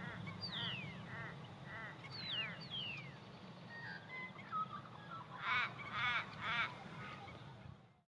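Birds calling in open country: several quick descending whistles and a run of short repeated notes, then three louder harsh calls about half a second apart near the end, over a steady low drone. The sound fades out at the very end.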